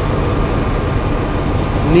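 Steady low drone of a bus's Detroit Diesel Series 60 12.7 engine idling, with a faint steady whine on top.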